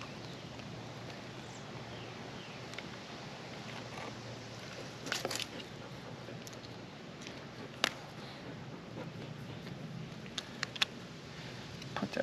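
Small handling sounds of weatherproofing tape being cut and pulled off a coax connector at a plastic antenna box. There are a few sharp clicks: a short cluster about five seconds in, one near eight seconds and two more near eleven seconds, over a steady faint background.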